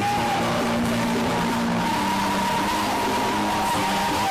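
Live praise band playing loudly, electric guitar and keyboard holding sustained notes over a dense, unbroken backing.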